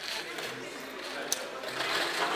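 Roulette ball rattling as it runs around a spinning roulette wheel, with one sharp click a little past a second in.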